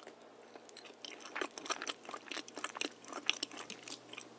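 Close-miked chewing of a mouthful of shepherd's pie with a crisp baked potato topping. From about a second in comes a quick, irregular run of small wet clicks and crunches.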